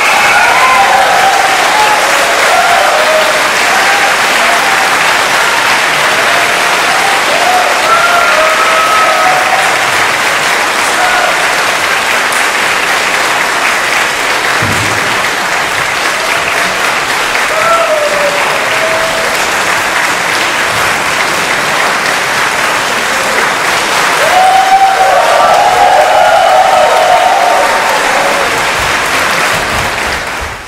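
Large audience applauding steadily, with scattered cheers and whoops; a louder burst of cheering comes near the end.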